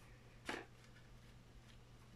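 Near silence with a faint steady low hum, broken about half a second in by one short, soft rustle of a paper frame being handled and laid onto card.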